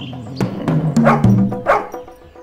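A dog barking several times in quick succession over light background music.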